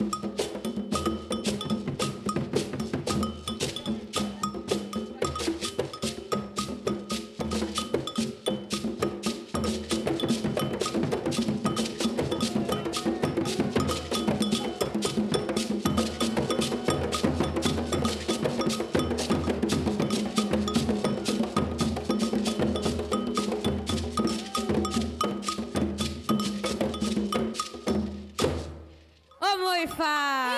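An Afro-Brazilian percussion group playing large hand drums and a beaded gourd shaker (xequerê) in a fast, steady rhythm with a ringing metallic beat. It stops abruptly near the end, and a woman's singing voice starts just after.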